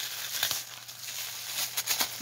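Tissue paper rustling and crinkling as hands press and handle a wrapped bundle, with a few short sharp crackles, one about half a second in and a cluster near the end.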